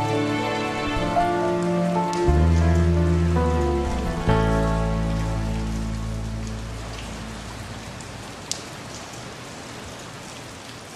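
The song's closing chords ring out and fade away, the last one struck about four seconds in. Underneath, rain falls steadily and remains as the music dies, with a single sharp tick near the end.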